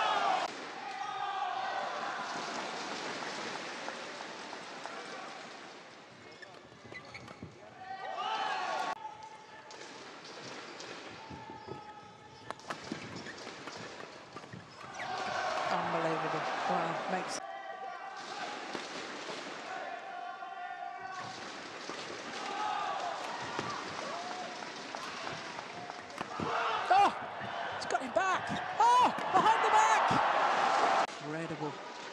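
Indoor badminton doubles rally: crowd cheering and shouting that swells and falls between points, with sharp racket strikes on the shuttlecock in a quick exchange near the end.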